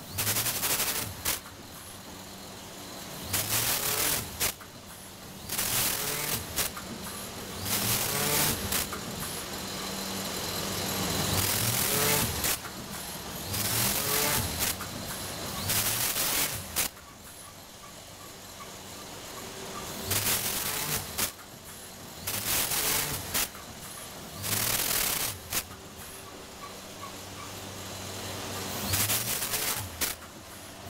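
Vertical form-fill-seal packaging machine running: a steady machine hum, broken every one to three seconds by a loud, short burst of noise as it cycles through its bags.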